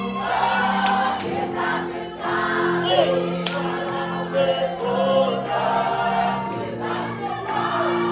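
A congregation singing a gospel worship song together, the voices moving over steady held chords.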